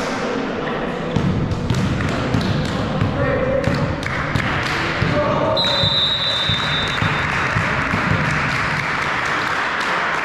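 Sports hall noise during a youth volleyball match: players calling out, scattered thuds of a ball and feet on the court floor, and a referee's whistle held steady for about a second just past midway.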